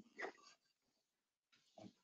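Near silence, with a faint brief sound just after the start and another faint brief one near the end.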